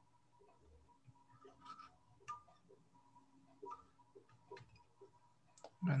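Faint, irregular small clicks and ticks of a wire whip-finish tool and tying thread being worked at a fly-tying vise while a fly's head is whip-finished, over a faint steady electrical hum.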